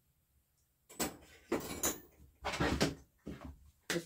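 A chainsaw being handled and set down on a wooden workbench: a few separate knocks and shuffles, starting about a second in.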